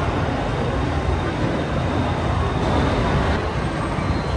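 Busy rail station ambience: a steady low rumble under the general noise of a dense crowd.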